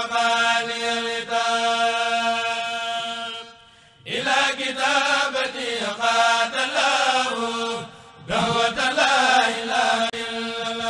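A Mouride khassida chanted in Arabic by a kurel (chanting group), with long drawn-out held notes. The chant breaks off briefly about four seconds in and again near eight seconds, then resumes with a new phrase each time.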